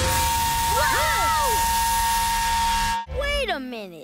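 Cartoon steam whistle blowing: a loud hiss of steam with a steady whistle tone for about three seconds, a few pitches bending up and down over it, cut off sharply. Then a pitched sound slides steeply down in pitch near the end.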